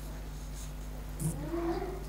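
Room tone with a steady low hum, and a faint, short murmur that bends in pitch in the second half.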